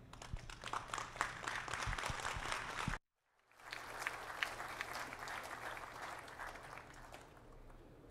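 Audience applauding with many hands clapping. The sound cuts out completely for about half a second around three seconds in, then the applause returns and gradually dies down.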